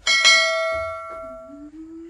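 A bright bell chime struck twice in quick succession, ringing with many overtones and fading over about a second and a half: the notification-bell sound effect of a subscribe-button animation.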